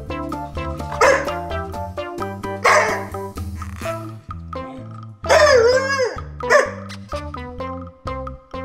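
A Siberian husky vocalizing in four short, grumbling calls, the longest and loudest a wavering, rising-and-falling howl-like moan about five seconds in, complaining at the other husky pawing at her. Background music plays throughout.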